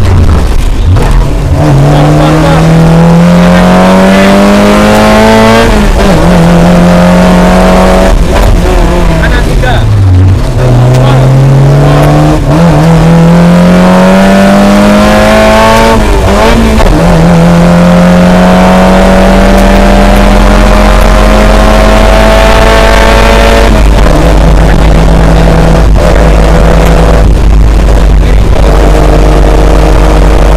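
Suzuki Jimny rally car's engine heard from inside the cabin, revving up through the gears: its pitch climbs several times, each climb cut off by a shift or a lift, falls deeply about ten seconds in, then holds steady over the last several seconds.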